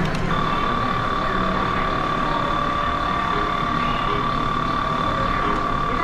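A single steady, high electronic tone from an arcade game machine, held for about six seconds over the constant din of a game arcade.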